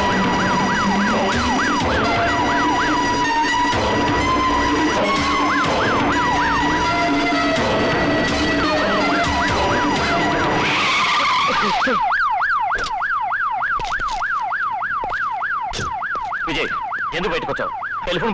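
Police jeep siren wailing in a fast rise-and-fall, about three sweeps a second, over background film music for the first eleven seconds or so. A short rushing hiss comes around eleven seconds in, after which the siren carries on without the music.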